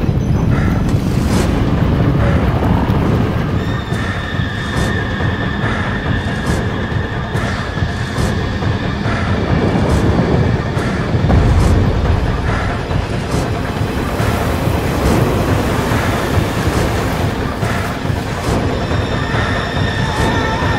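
Film trailer soundtrack of score and sound effects: a loud, dense low rumble struck through with repeated sharp hits, and a high held tone for several seconds from about four seconds in.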